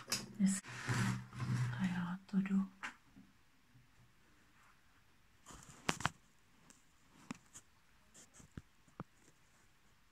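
A woman murmuring quietly for the first few seconds, then near quiet broken by a few faint, sharp clicks and crackles of handling, the loudest cluster about six seconds in.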